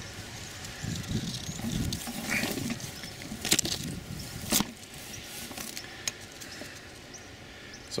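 Rustling and handling noises as the camera is moved through the leafy branches of an apple tree, with low thumps in the first two seconds and a couple of sharp clicks in the middle.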